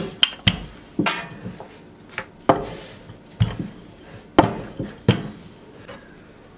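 Wooden rolling pin rolling out soft yeast dough on a silicone mat, with a series of sharp wooden knocks, irregular but roughly one a second, as the pin is pushed back and forth.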